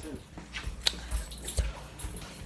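Handling noise from a hand-held phone: low rumbles with a sharp click a little under a second in and a dull knock later on.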